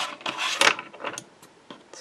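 Red-liner double-sided tape being pulled from its roll and handled against card: rasping, tearing-like rustles in the first second, then a few light clicks.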